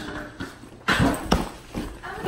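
Handling noise from a phone being swung and jostled: rustling, with two sharp thumps about a second in, a third of a second apart.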